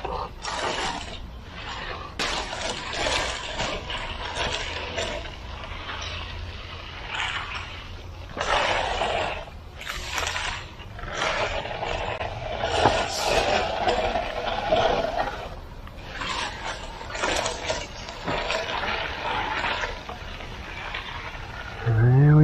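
Long-handled concrete groover scraping through wet concrete, pushed and pulled along a control joint in repeated rough strokes of uneven length.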